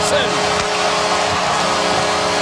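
Arena goal horn sounding steadily over a loud cheering crowd, marking a home-team goal.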